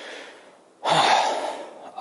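A man's breath between phrases: a faint inhale, then about a second in a louder breathy exhale lasting under a second and fading out.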